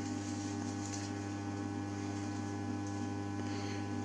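Steady, buzzy mains hum from an energised ferroresonant transformer and Variac, the ferro's magnetic core driven well into saturation at about 270 volts input.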